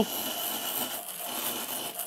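A stick of chalk rubbed round and round in a small pile of salt on paper, grinding pigment into the salt to colour it.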